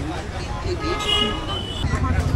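A vehicle horn sounds once, a steady tone held for about a second in the middle, over a constant low rumble of road traffic and people talking.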